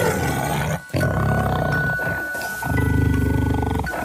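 Tiger growling in low, pulsing rumbles, strongest in a long growl near the end, with a short break just under a second in. A steady high musical tone runs underneath throughout.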